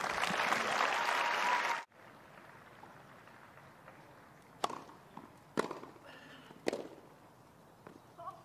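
Crowd applause that cuts off abruptly about two seconds in. Near the end come three sharp pops of a tennis racket striking the ball, about a second apart, as a rally is played on a grass court.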